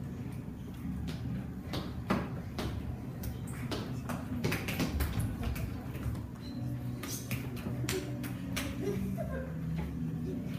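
Children moving about on a tiled classroom floor: footsteps and shuffling, with scattered taps and knocks.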